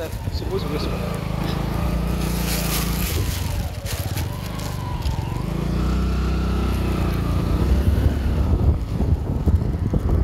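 Motorcycle engine running as the bike rides along, its pitch rising and falling gently with the throttle.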